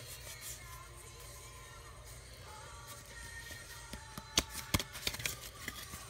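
Faint background music over a steady low hum. About four seconds in come a few sharp clicks and snaps as a stack of Pokémon trading cards is handled.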